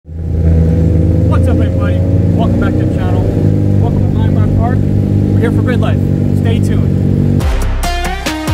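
A man talking over a loud, steady engine rumble from vehicles running nearby. About half a second before the end, an electronic music track cuts in.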